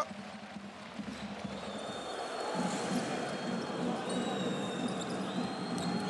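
Basketball arena game sound: crowd noise that builds steadily over the few seconds, with a ball bouncing on the hardwood court.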